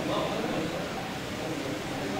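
Indistinct men's voices murmuring in a reverberant hall, with no clear words or sustained recitation.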